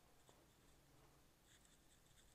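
Near silence: room tone with a few faint rustles, a little past the start and again near the end.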